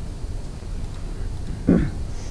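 Steady low room rumble in a lecture hall, with one short voiced sound near the end.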